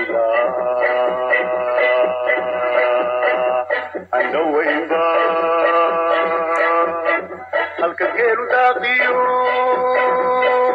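Background music: a song with long held sung notes over a steady accompaniment, breaking briefly about four seconds in and again near seven and a half seconds.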